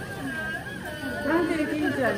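People talking nearby, with overlapping voices of chatter that grow louder in the second half.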